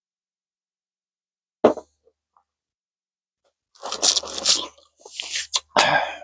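A man drinking coffee from a glass mug: a single sharp click about a second and a half in, then short breathy, throaty noises through the second half as he swallows and breathes out after the sip.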